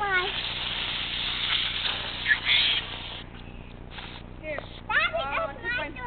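Aerosol can of silly string spraying with a steady hiss for about three seconds, then stopping as the can runs empty.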